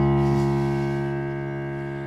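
A single piano chord, struck just before and held, fading slowly and steadily.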